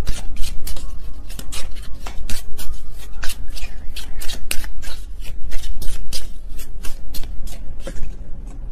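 A deck of tarot cards being shuffled by hand close to the microphone: a rapid, irregular run of card clicks and slaps, several a second.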